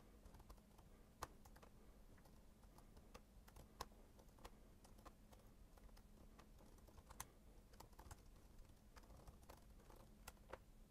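Faint computer keyboard typing: scattered single keystrokes with short pauses between them, a few clicks standing out slightly louder.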